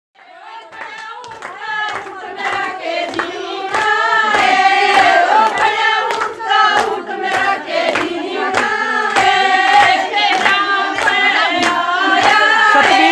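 A group of women singing a Haryanvi folk song together, with a steady beat of hand claps. It starts faint and grows louder over the first few seconds.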